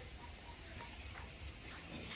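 Quiet background noise: a faint, steady hum and hiss with no distinct event.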